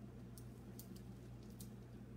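Faint handling sounds: a few soft clicks and rustles as a sock is pressed down by hand onto hot glue, over a steady low hum.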